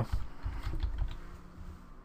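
Computer keyboard typing: a short, quick run of keystrokes that fades out toward the end.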